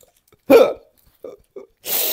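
A man's short burst of laughter, followed by a couple of quieter chuckles, then a brief breathy hiss near the end.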